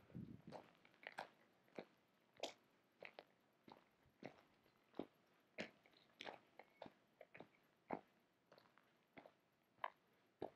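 Faint footsteps crunching on a stony gravel path at a steady walking pace, a little under two steps a second.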